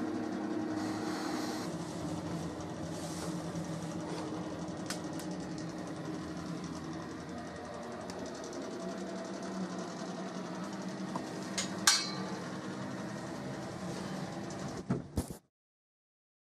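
A steady low hum with a faint pitched drone in a small tiled room. A sharp clink comes about twelve seconds in, and a few knocks follow near the end before the sound cuts off abruptly.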